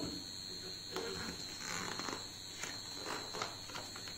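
A picture-book page being handled and turned, heard as a few soft paper rustles and taps. A faint steady high-pitched whine runs underneath throughout.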